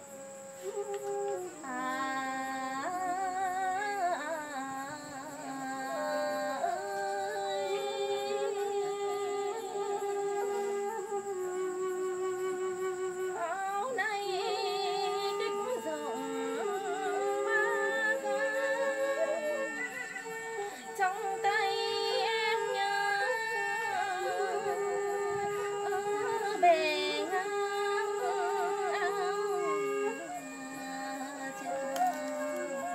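Vietnamese bamboo flute (sáo) playing a slow, ornamented chèo melody, with long held notes that bend and trill and a second melodic part sounding beneath it at times.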